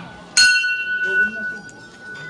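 A prayer wheel's bell struck once, a bright ring starting about a third of a second in and dying away over about a second. The bell sounds once each time the large hand-turned wheel comes round.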